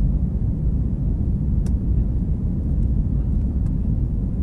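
Steady low rumble of a jet airliner's engines and airflow, heard inside the passenger cabin, with a couple of faint clicks.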